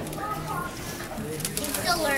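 Latex balloons squeaking as the balloon arrow rubs against the balloon bow, with a squeak gliding down in pitch near the end, over background chatter.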